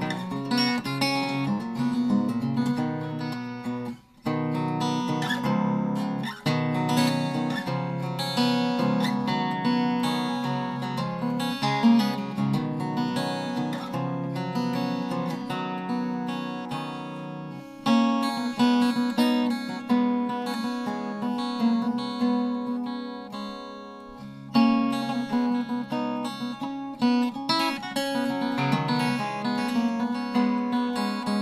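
A 1952 Gretsch 6185 Electromatic hollow-body archtop guitar played unplugged, heard by its own acoustic voice, with strummed and picked chords on strings the owner takes for flatwounds. Playing stops briefly about four seconds in, and twice later a chord is left ringing and fading before the playing resumes.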